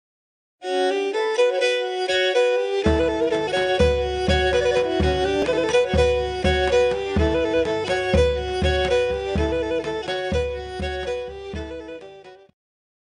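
Pontic Greek dance music: a fiddle-like bowed string melody starts just under a second in, and a deep drum beat joins about three seconds in; the music fades out at the end.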